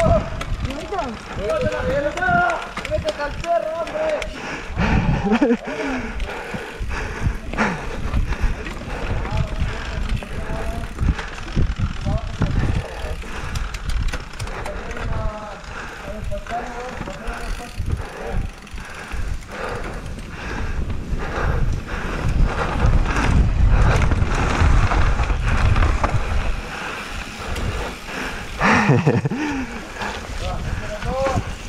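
Mountain bike riding down a dirt trail: tyres rolling over dirt and the bike rattling over bumps, with many short knocks throughout and a heavier rumble about two-thirds through.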